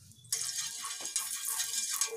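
Sizzling on a hot iron tawa, an even hiss that starts suddenly about a third of a second in and stops near the end.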